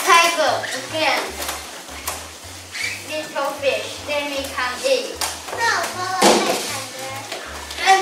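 Children's voices speaking over background music with a low, stepping bass line.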